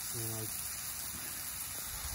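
Burgers and onions sizzling in a frying pan on a portable gas camping stove, a steady even hiss. A short voice sound comes briefly near the start.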